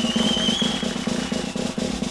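Snare drum roll on a drum kit, fast even strokes played without a break, with a thin high steady tone over the first second and a half.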